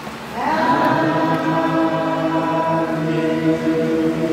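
Church hymn singing in long held notes; about half a second in, the voices slide up onto a new sustained note.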